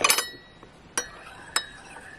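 Metal teaspoon clinking against a porcelain teacup and saucer while milky tea is stirred: three sharp clinks with a brief ring, at the start, about a second in and again just after.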